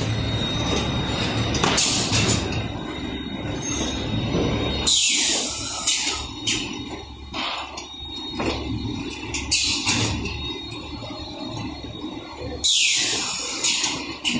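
Automatic folder gluer and stitcher machine running as it feeds corrugated carton blanks. It makes a steady low mechanical rumble with irregular clacks and knocks. Two loud hisses of air come about five seconds in and again near the end.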